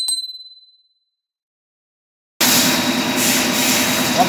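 A single bell-like notification ding from a subscribe-button animation, fading within a second. About two and a half seconds in, the steady machining noise of an Ace Micromatic Cub LM CNC lathe running with coolant spraying starts abruptly and is the loudest sound.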